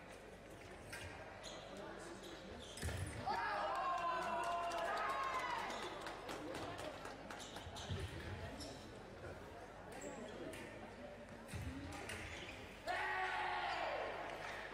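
Foil fencers' feet stamping and tapping on the piste, with heavier thumps now and then. A loud shout comes about three seconds in as a touch is scored, and a voice calls out again near the end.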